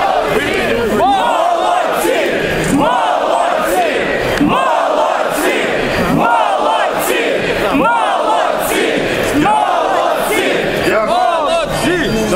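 Large crowd of protesters shouting together, many raised voices overlapping and loud.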